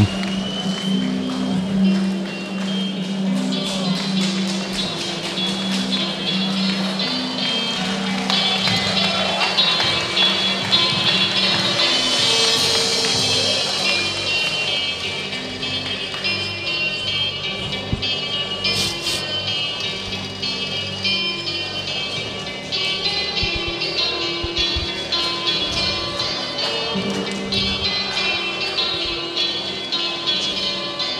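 Fighter's walkout music playing through the hall: a steady song with a regular beat and repeating melodic notes.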